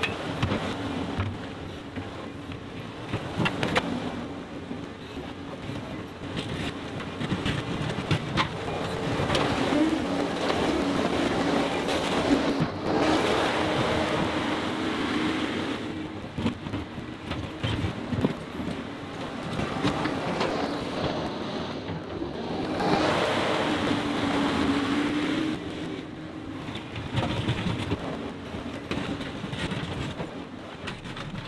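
John Deere 325G compact track loader's diesel engine running under work as the machine drives and grades dirt. Its sound swells and eases in turns as the loader moves off and comes back, with scattered knocks and clanks over it.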